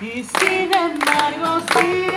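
A woman singing into a handheld microphone over a thinned-out accompaniment, picking up again about a third of a second in after a short break. The fuller band accompaniment returns near the end.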